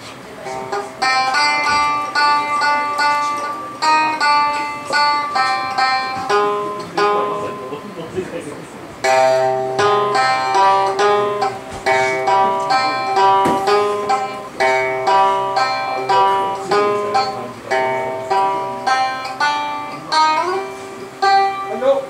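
A minmin, a small plucked string instrument, playing a twangy single-line melody of quick plucked notes. It pauses briefly around eight seconds in, then carries on, and a note bends upward near the end.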